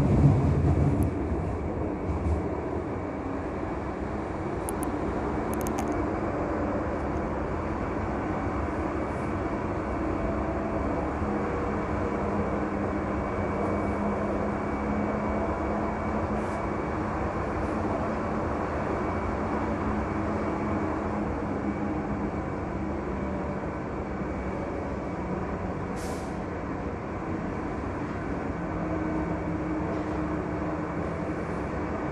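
Light-rail Stadtbahn car running through a tunnel, heard from inside the passenger compartment: a steady rolling rumble with a low motor hum. There are a couple of brief high squeaks, one about five seconds in and one near the end.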